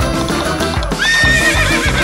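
Upbeat background music with a clip-clop beat, and a horse whinny that rises and then quavers about a second in, laid over the music.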